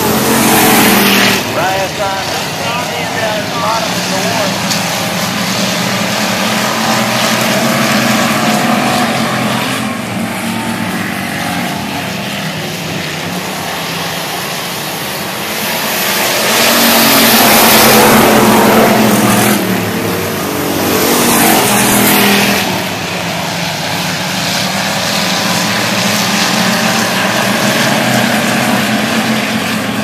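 Dirt-track factory stock car engines running on the oval, loud and continuous, swelling twice past the middle as cars come by close to the fence.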